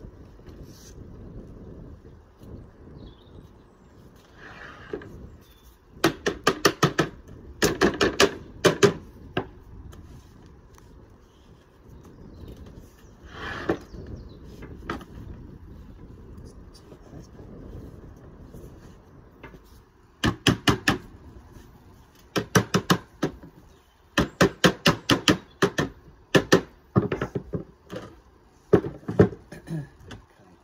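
Sheet lead being wrapped around a stainless steel flue pipe and handled on a bench: bursts of quick, sharp knocks and rattles, each lasting about a second, with a couple of softer rustles between them.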